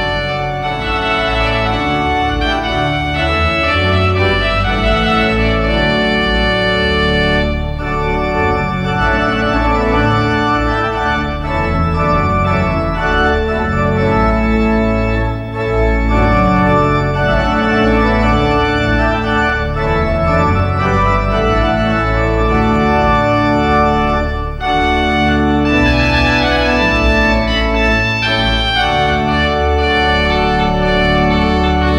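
Large Ruffatti pipe organ playing on its reed stops, sustained trumpet-like chords over a deep pedal bass, with two short breaks between phrases.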